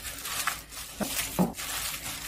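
Gloved hands kneading sliced pork neck in a wet doenjang marinade in a glass bowl: soft squishing and rubbing, with a few short sharper sounds.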